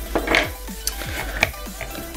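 Several light clicks and knocks of a plastic Transformers toy (G2 Nautilator) being handled and set down on a table.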